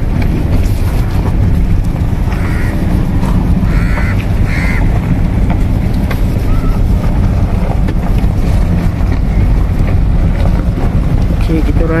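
Steady low rumble inside a slowly moving car, with wind buffeting the phone's microphone. Faint voices come through a few times in the middle.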